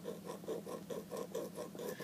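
Small metal file rasping across the edge of an old 95%-copper penny in quick, even back-and-forth strokes, about five or six a second, quietly.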